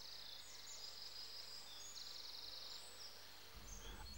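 Faint forest ambience: a quiet hiss with high, thin trilling calls coming and going through it, over a steady low hum.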